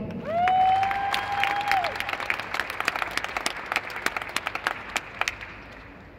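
Audience applauding for a graduate after the name is read, with sharp claps close by. A single long whooping cheer, held at one pitch, rides over the start for about a second and a half. The clapping thins out and dies away near the end.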